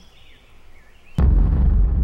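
A sudden loud, deep boom a little over a second in that rumbles on afterwards: an explosion-like trailer sound effect.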